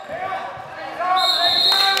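A basketball being dribbled on a hardwood gym floor. Then a referee's whistle blows one steady, shrill note for a little under a second near the end.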